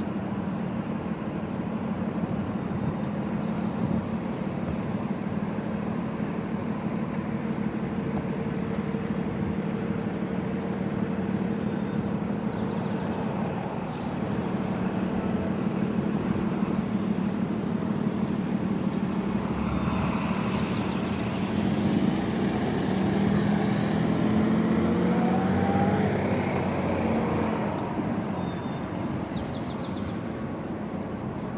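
Road traffic on a multi-lane city street: a steady low hum with an even haze of tyre and engine noise. A louder vehicle passes from about two-thirds of the way through, its engine pitch rising, then fading.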